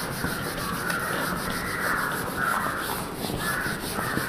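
A handheld eraser rubbed back and forth across a whiteboard, wiping off marker writing in a steady run of quick swipes.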